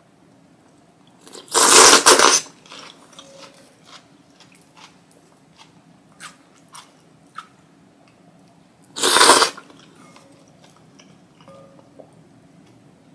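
Two loud slurps while eating spicy ramen, about two seconds in and again near nine seconds, each lasting about a second, with quiet chewing and light clicks between.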